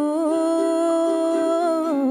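A woman's voice holding one long note over the ringing strings of a ukulele, the note wavering near the end.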